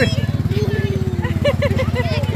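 A vehicle engine idling, a steady low rapid throb, with crowd voices over it.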